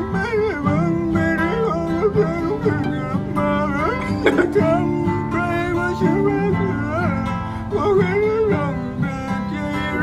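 A Thai pop song: a man singing in a gravelly, Scooby-Doo-like voice over an acoustic guitar.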